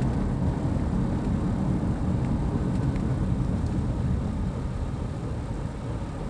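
Steady low rumble of a car driving, heard from inside its cabin: engine and road noise.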